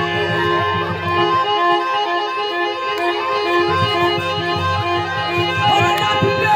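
Harmonium playing a kirtan melody: a line of short, evenly repeated notes under sustained higher notes, at an even loudness.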